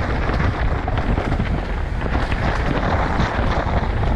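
Mountain bike descending a dirt trail at speed: wind rushing on the microphone, tyres rolling over the dirt, and many small rattles and clicks from the bike over rough ground.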